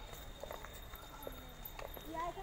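Footsteps of several people walking on a paved path: a few scattered, sharp steps over a quiet background, with a faint voice about halfway through.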